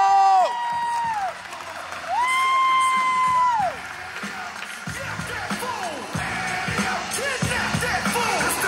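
Audience cheering, with two long, high whoops held for a second or more each. About five seconds in, music with a steady beat comes in under the cheering.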